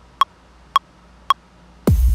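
Ableton Live's count-in metronome clicking three times, evenly about half a second apart. Near the end, the triggered electronic groove loop starts with a deep kick drum that drops in pitch.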